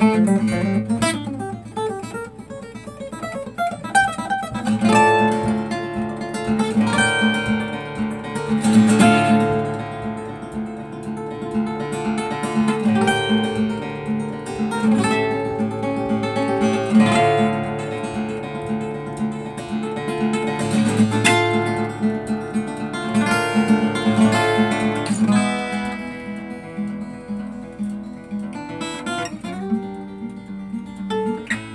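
Solo acoustic guitar played live, a melody and chords over a steadily repeated low bass note. The playing gets softer near the end.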